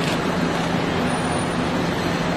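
Steady road traffic noise with a constant low engine hum underneath, no single vehicle standing out.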